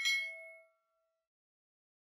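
Notification-bell chime sound effect: a single bright ding that rings and fades away within about a second, sounding as the animated bell icon is clicked.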